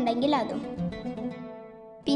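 Background music of plucked strings, its notes fading away toward the end, with the tail of a spoken voice in the first half-second.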